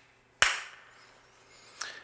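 A single sharp hand clap about half a second in, ringing briefly in a small room: a sync clap that marks the start of the recording. A faint click follows near the end.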